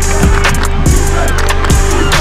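Backing music with a sustained deep bass, held tones and repeated booming bass-drum hits that drop in pitch.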